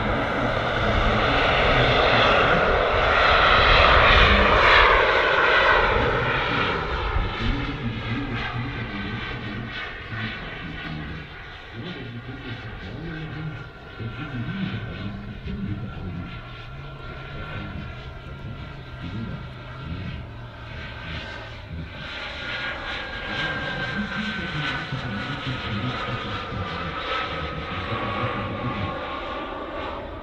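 The four JetsMunt 166 model jet turbines of a large RC Airbus A380 in flight: a steady jet rush, loudest a few seconds in, then fading as the model flies away. In the second half a high turbine whine slides slowly down in pitch.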